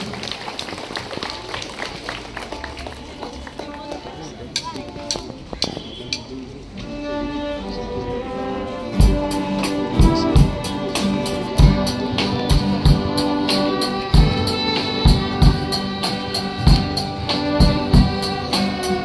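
A children's ensemble of violins and guitars starts playing about seven seconds in, after a few seconds of scattered clicks and knocks. A drum kit joins about two seconds later with a regular beat.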